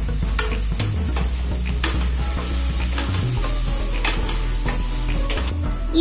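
A wooden spatula stirring and scraping onions and tomatoes frying in a stainless steel kadai, in repeated strokes about two a second over a steady sizzle of hot oil.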